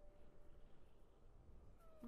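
Near silence: room tone, with a faint brief tone near the start and another faint rising tone near the end.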